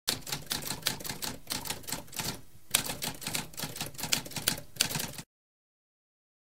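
Typewriter typing sound effect: a quick run of key strikes with a short break just before halfway, then more strikes that cut off suddenly about a second before the end.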